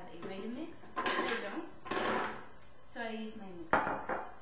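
Carrot pieces tipped from a bowl into a blender jar, rattling and sliding in two rushes about one and two seconds in, followed near the end by a single sharp knock.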